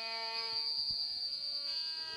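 Soft background music from the stage accompaniment: several held notes sounding together, with a steady high-pitched whine on top.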